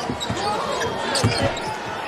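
A basketball being dribbled on a hardwood court, a series of low thuds, over the steady noise of an arena crowd.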